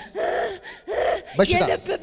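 A woman gasping hard into a close-held microphone: two loud, breathy gasps in the first second, then a short voiced cry.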